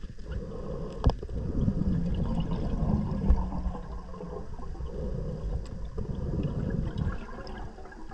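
Muffled underwater water noise: an uneven low rumble of water moving around the diver, with a single sharp click about a second in.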